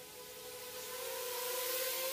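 A small HGLRC Rekon 3 FPV quadcopter's brushless motors and propellers give a steady whine that starts faint and grows louder as the drone flies in toward the listener. The pitch steps up slightly about a second in.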